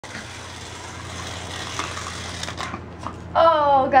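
Toy slot cars' small electric motors whirring around a plastic track, with a few light clicks, the whir dying away about two and a half seconds in; near the end a person exclaims "Oh".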